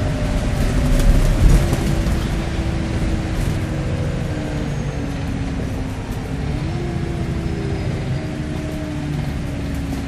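Cummins diesel engine and Voith automatic gearbox of an Alexander Dennis Enviro400 MMC double-decker bus heard from inside the passenger saloon while under way: a low rumble with whining tones that slide and step in pitch as the bus changes speed. A few knocks and rattles come through about a second in.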